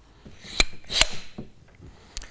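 Parts of a disassembled tie-rod hydraulic cylinder being handled: a brief rub of the steel barrel tube against the gland-end assembly, then two sharp clicks about half a second apart and a lighter knock.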